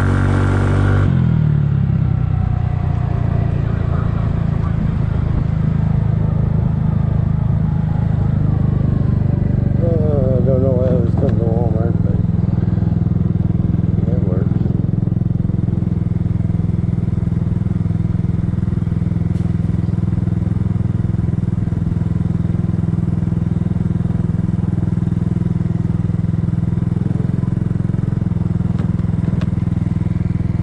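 2007 Kymco 250cc scooter's single-cylinder four-stroke engine falling in pitch about a second in, then running low and steady as the scooter moves slowly along.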